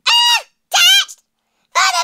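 Three short, very high-pitched squawking vocal calls from a man, each about half a second long with a gliding pitch and gaps of silence between them.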